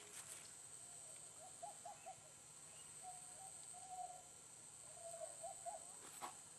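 Faint bird calls: a few short hooting notes in quick runs and a couple of longer held notes, over a steady high hiss.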